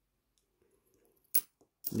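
Near silence, then a single sharp click about 1.3 seconds in as coins are set down on a cloth mat, with a faint second tick just after.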